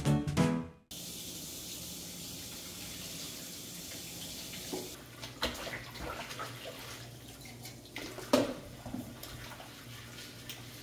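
Kitchen tap running steadily into a stainless-steel sink. About halfway through the water stops and dishes are scrubbed with a dish brush, with scattered clatters and knocks and one louder knock near the end.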